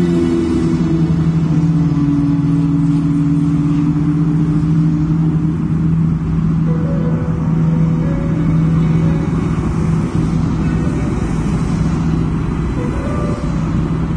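Steady rumble of heavy motorway traffic, cars and trucks passing continuously, with a slow droning background music of long held notes over it.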